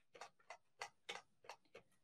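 A run of faint, light clicks, irregularly spaced at about four a second.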